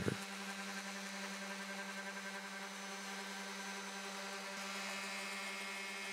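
Random orbital sander running steadily on a wooden tabletop: an even motor hum that holds one pitch throughout.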